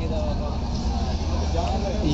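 Men's voices talking indistinctly over a steady low rumble.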